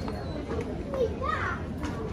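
A child's high voice calls out briefly about a second in, over a low murmur of shoppers' talk.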